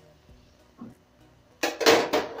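Faint background music, then, about a second and a half in, a loud metallic clatter: a knife set down on the stainless steel stovetop and the metal pot lid picked up.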